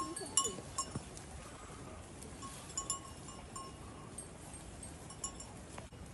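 Goats in grass and undergrowth, heard quietly, with scattered faint, brief high chirps and a few light clicks over a low background.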